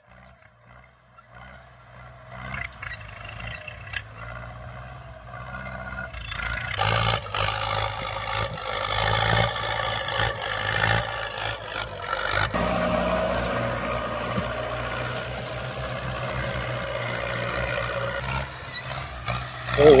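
Diesel farm tractor pulling a disc harrow through soil, its engine working under load. Faint at first, it grows loud about six seconds in as the tractor passes close, then holds steady.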